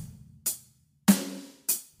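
Drum kit playing a basic beginner beat: even hi-hat strokes about every 0.6 seconds, with a kick drum on the first beat and a snare on the third.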